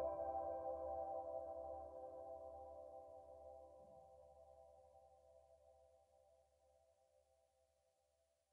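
The song's final sustained chord fading out slowly, dying away to silence about seven seconds in.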